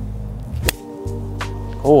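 A golf club striking the ball on a low shot: a single sharp crack about two-thirds of a second in, over steady background music.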